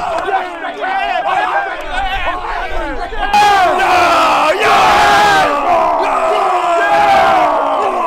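A group of men shouting together in a team war cry, many voices at once, getting louder about three seconds in.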